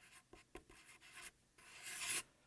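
Felt-tip marker writing on paper: faint, short scratchy strokes, with a longer, louder stroke near the end.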